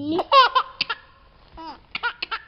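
A young child laughing in a run of high-pitched bursts, loudest in the first second, with a few shorter bursts near the end.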